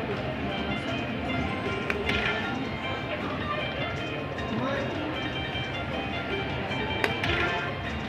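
Slot machine's hold-and-spin bonus music and reel chimes, running throughout, with brighter chime bursts about two seconds in and again about seven seconds in as the reels stop and bonus coins land.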